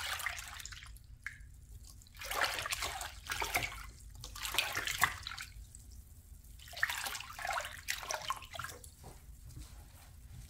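Water sloshing and splashing in a plastic basin as a gloved hand swishes it, in three bouts of a couple of seconds each with quieter gaps between, mixing pine cleaner into the water until it turns cloudy.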